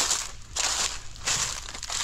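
Footsteps crunching through a thick layer of dry fallen leaves, a step about every two-thirds of a second.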